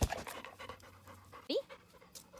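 A dog panting close by, with a sharp knock at the very start.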